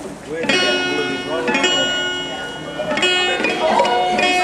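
Guitar chords strummed by a street busker. Three chords strike sharply, about half a second in, a second later and again near three seconds, and each rings on.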